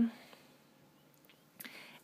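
Near silence, just room tone, as a woman's narration pauses, with a faint short intake of breath near the end.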